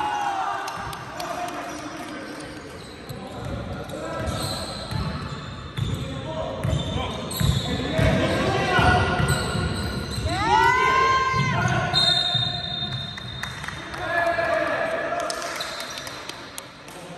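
A basketball bouncing on the sports-hall floor during play, with players shouting calls to each other, all echoing in a large hall.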